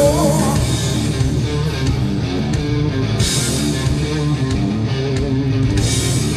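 Live blues-rock power trio playing an instrumental passage: a Stratocaster-style electric guitar through a Marshall amp over bass and drums, with cymbal crashes about three seconds in and near the end.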